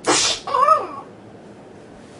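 A person's mouth-made sound effects: a sharp hissing burst lasting about half a second, then a short high-pitched cry that rises and falls, voiced for a toy figure being struck down.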